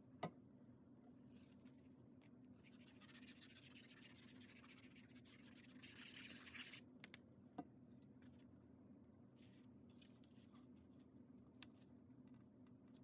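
Faint scratching of a liquid glue bottle's applicator tip drawn over the back of a cardstock layer, loudest about six seconds in. A few faint ticks of the paper being handled follow.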